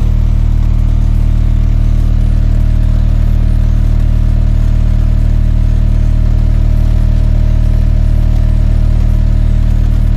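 A steady, loud 38 Hz test tone played through a car subwoofer driven by a Cerwin Vega H1500.1D monoblock amplifier, with a stack of buzzy overtones above it. The gain is being turned up to just below clipping.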